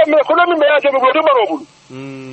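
Speech, sounding thin as over a telephone line, breaking off a little before the end.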